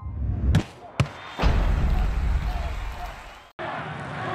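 Intro sting sound effects: two sharp hits about half a second and a second in, then a deep low boom that fades. About three and a half seconds in it cuts abruptly to stadium crowd noise.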